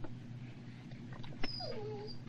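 A large dog gives a short whine that falls in pitch near the end, just after a sharp click, over a steady low car hum.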